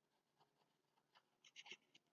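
Near silence, with faint ticks and scratches of a stylus writing on a tablet, a little cluster of them about one and a half seconds in.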